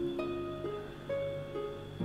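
Background music: a plucked-string instrument playing a slow melody, a new note about every half second.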